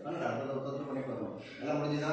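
A man's voice reciting mantras in a steady chant, with a short break about one and a half seconds in.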